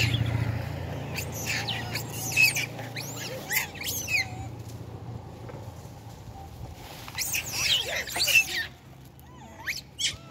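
Long-tailed macaques squabbling over food, giving repeated short high-pitched squeals and chirps in two bouts: from about one and a half to four and a half seconds in, and again around seven to eight and a half seconds in. A low hum fades away over the first few seconds.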